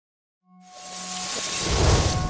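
Logo intro sound effect: after a moment of silence, a rush of noise with a deep rumble swells up, louder and louder, over a few held synthesized tones.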